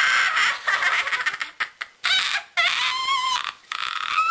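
Girls' high-pitched, shrieking laughter, first breathy and rapidly pulsing, then in several short squealing bursts.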